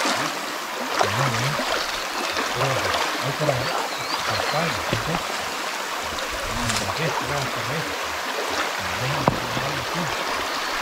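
Shallow stream running steadily over rocks, with splashing as people wade through the water and indistinct low voices at times.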